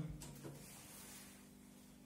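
A single soft click of a voltage stabilizer's power switch being pressed, about half a second in, followed by a faint steady low hum.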